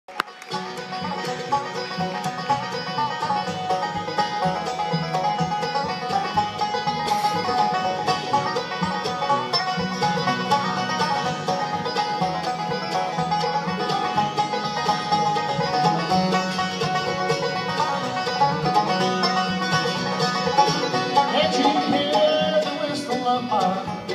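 Bluegrass band playing live: banjo, fiddle, acoustic guitar, mandolin and upright bass in an instrumental introduction at a brisk, steady pace, without singing.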